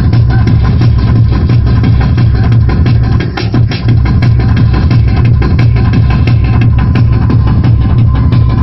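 Loud, fast tekno (free-party techno) mixed from vinyl turntables and played through a sound system, with a heavy bass and a steady driving kick drum.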